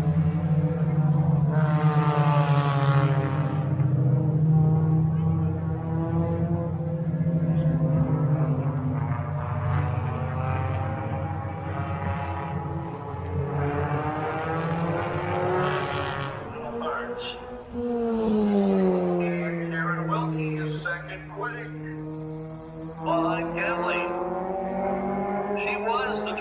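Stock car engines running on a short oval track, a steady engine drone for the first dozen seconds, then a tone that drops in pitch as a car goes past about eighteen seconds in.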